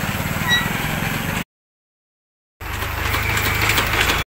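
Outdoor street background noise with a steady low rumble. It cuts to dead silence for about a second, a second and a half in, then resumes.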